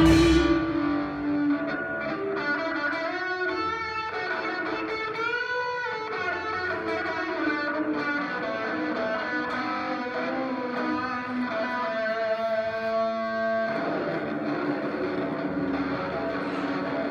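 Live electric guitar played through effects, holding sustained ringing notes with a couple of pitch bends, after the full ensemble drops away in the first half-second.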